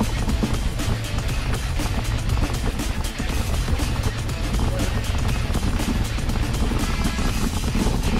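Background music over the steady rumble of wind buffeting a bike-mounted camera's microphone as a mountain bike rides a dirt singletrack.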